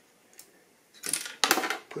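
A short run of small metallic clicks and rattling, starting about a second in after a near-quiet moment, as the action of a bolt-action rifle is handled.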